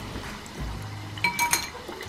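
A metal fork clinking twice against a metal mesh strainer, with a short bright ring, about a second and a half in, over a low steady hum.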